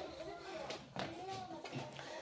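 Faint, indistinct speech.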